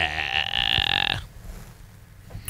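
A man's drawn-out, low, creaky vocal sound, like a held "uhh" or grunt, lasting about a second and stopping abruptly, followed by quiet studio room tone.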